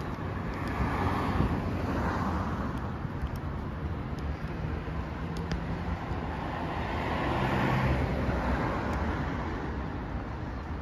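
City street traffic: cars passing on the road alongside, a steady hum that swells as vehicles go by, loudest about a second in and again around seven to eight seconds.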